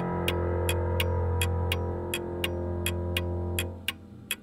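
Electronic music ending on a held synthesizer chord with a deep bass note, which fades out near the end. Under it a clock ticks steadily, about three ticks a second, and the ticking carries on alone once the chord is gone.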